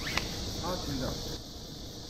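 Quiet outdoor ambience: a faint high insect hiss that stops about two-thirds of the way in, with a faint distant voice speaking briefly and a single click near the start.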